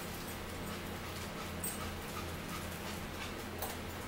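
A chihuahua making small, faint sounds now and then over a steady low hum.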